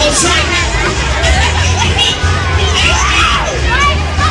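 Fairground crowd shouting and screaming, children's voices among them, over loud music with a heavy bass.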